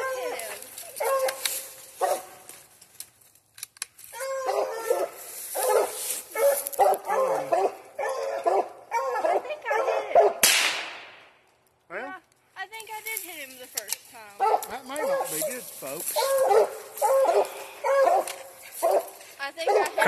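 Coonhounds barking repeatedly at the base of a tree where they have treed a raccoon. About halfway through, a single loud gunshot cracks out, the hunter's second shot at the raccoon.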